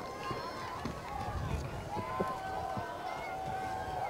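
Distant crowd of spectators shouting and cheering, many faint voices overlapping.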